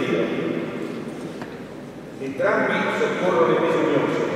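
A man reading aloud into a microphone, with a short pause about halfway through before he goes on.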